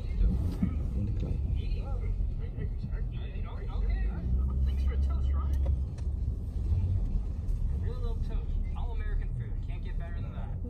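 Low, steady road rumble of a moving car heard from inside the cabin, swelling for a couple of seconds around the middle, with faint talking over it.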